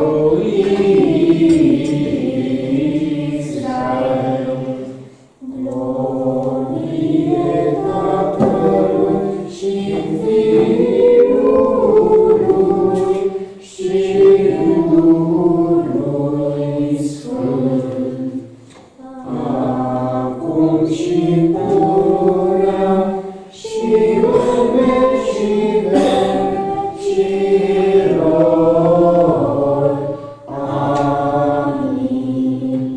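A group of voices singing a church hymn without accompaniment, in phrases of a few seconds each with short pauses for breath between them.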